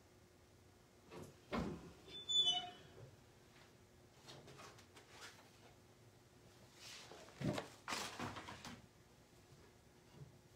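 A heat press being opened: knocks and a short squeak about two seconds in as the platen is lifted. More knocks and handling sounds come around eight seconds in.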